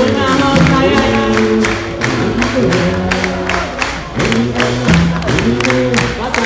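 A live band playing amplified pop music with a steady drum beat and sustained guitar and keyboard notes, loud and reverberant as heard from within the audience.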